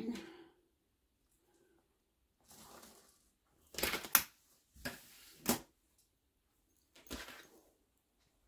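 A marking pen scratching along a ruler as lines are drawn on fabric, with the ruler and fabric shifted in between: a few short scratches and rustles about a second apart, separated by quiet.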